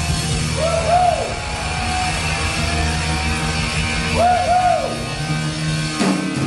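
A rock band playing live, with electric guitars, bass guitar and a drum kit. Twice, about a second in and again just past four seconds, a pair of high wailing notes rises and falls over the band.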